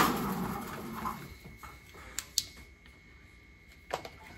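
Quiet handling sounds at a workbench: a rustle of movement fading over the first second or so, then a few light clicks, as of tools being picked up and a flashlight switched on. A faint steady high tone runs under the second half.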